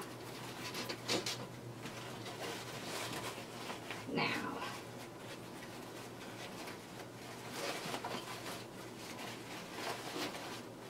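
Ribbon bow loops rustling and crinkling in short bursts as they are handled and fluffed, over a faint steady hum.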